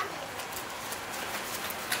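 Steady low background noise in a room, with a few faint clicks just after the start and near the end.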